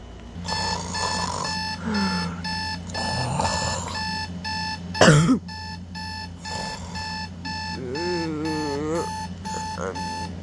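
Digital alarm clock beeping, a recording played through a tablet's speaker: short even high beeps, about three a second, starting half a second in. A short loud squeal cuts across the beeping about halfway through.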